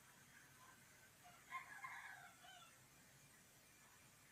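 Near silence: room tone, with a faint, distant animal call lasting about a second and a half in the middle.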